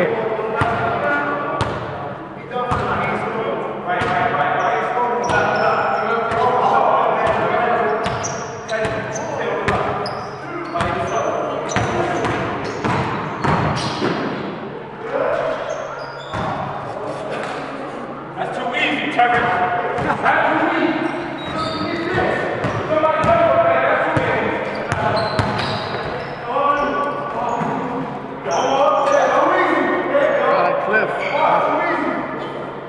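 Basketballs bouncing on a gym floor, repeated thuds that echo around a large hall, with players' voices and chatter.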